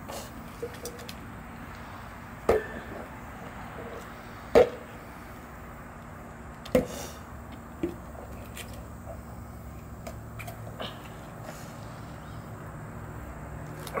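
A few sharp knocks and cracks from a whole coconut's shell being broken apart over concrete, the loudest about halfway through, over a steady low background hum.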